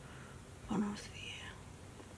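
A woman's short murmured, half-whispered utterance about a second in, a brief voiced sound trailing off into breath.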